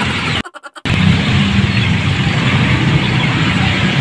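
Steady, loud background noise with a low hum underneath, cutting out briefly about half a second in.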